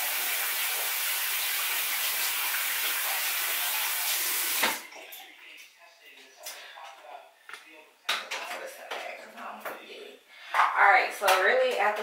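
Tap running steadily into a sink while hands are washed, shut off abruptly about four and a half seconds in; scattered small clicks and knocks follow.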